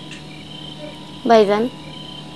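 Steady background chirring of crickets, with a short phrase of a woman's voice about halfway through.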